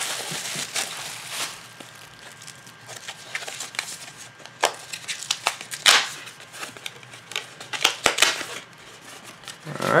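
Bubble wrap and paper crinkling and rustling as a package of trading cards is unwrapped by hand, with a few sharper crackles scattered through.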